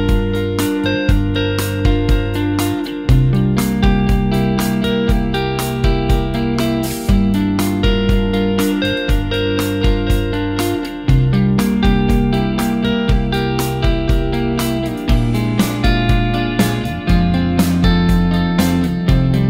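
Fully arranged instrumental song led by electric guitar through a Strymon Dig V2 dual digital delay, its repeats set to dotted quarter notes and synced to the DAW's MIDI clock. The guitar comes from a British-style 18-watt amp into a UA OX with a Greenback speaker impulse response, over a steady rhythmic backing.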